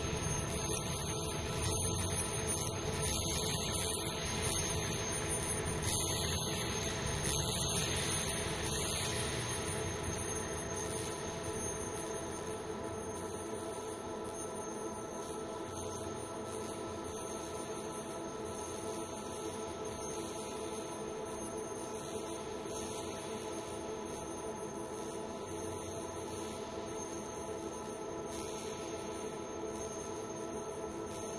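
Experimental electronic drone music: a stack of steady sustained tones with a high whistling whine on top. A crackling, fluttering noise runs over it and thins out about ten seconds in, while the whole piece fades down.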